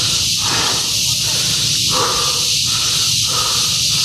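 A steady high-pitched insect drone fills the forest. Close to the microphone, a person breathes hard and rhythmically, about one breath every three-quarters of a second, worn out from climbing the steps.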